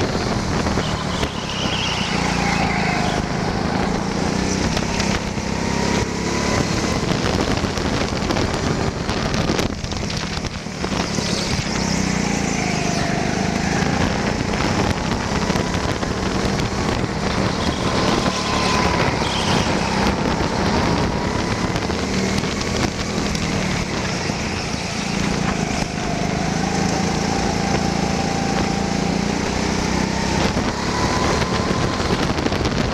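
Indoor go-kart driven at speed, heard onboard: the kart's drive running steadily, its pitch rising and falling every few seconds through the corners and straights, over tyre and wind noise.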